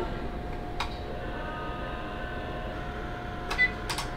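Veterinary x-ray machine firing an exposure: a steady electrical tone with a fainter, higher whine over it from about a second in, with a click about a second in and two more clicks near the end.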